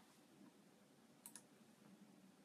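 Near silence: room tone, with two faint quick clicks close together a little past the middle.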